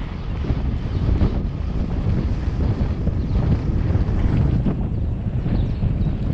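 Wind buffeting a GoPro's microphone while riding a bicycle, a steady low rumble that rises and falls unevenly.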